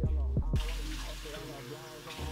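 Hip hop background music with a beat, then a bathroom tap suddenly running into the sink about half a second in, the steady hiss of the water over the music.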